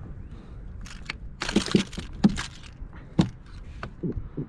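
A string of irregular sharp knocks and clicks as a freshly landed trout and a landing net are handled on a plastic kayak deck, the lure's hooks snagged in the net mesh.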